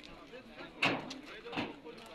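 Indistinct men's voices in the background, with a short, sharp knock a little under a second in and a weaker one about half a second later.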